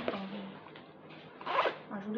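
Zipper of a small plastic pouch being worked, with a short rasping zip about one and a half seconds in.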